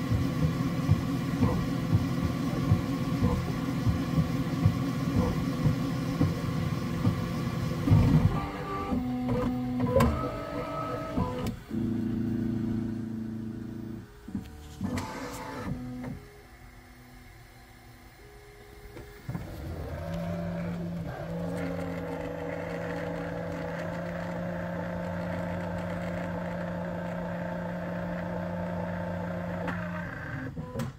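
Bambu Lab X1 Carbon 3D printer's stepper motors working through the last small layers of a print: a dense run of rapid ticks over a low whine, then a few seconds of separate moves at changing pitches. After a brief quieter lull and a short rising whine, a steady hum runs on to the end.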